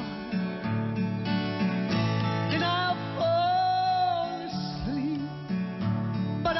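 A woman singing a slow country gospel song to acoustic guitar and band accompaniment, holding one long note with vibrato through the middle.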